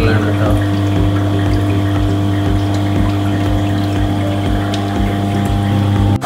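Aquarium electric air pumps humming steadily, with a deep mains-frequency drone and a low pulse about twice a second, over water bubbling from air-driven sponge filters in the tanks.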